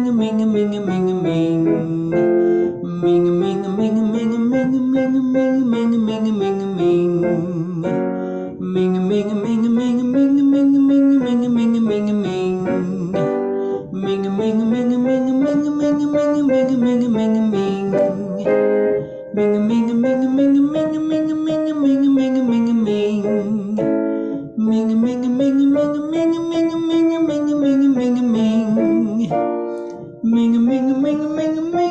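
Vocal warm-up: a voice hums a narrow 'mm' in a repeated up-and-down pattern with piano accompaniment. The pattern comes round about every five seconds, each repeat pitched a little higher.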